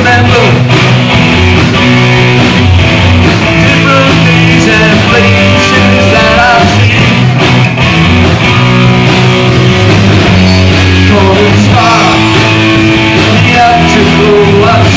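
Live rock band playing loudly: electric guitars over a drum kit.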